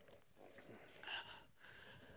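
Near silence: faint outdoor room tone, with one brief faint sound about a second in.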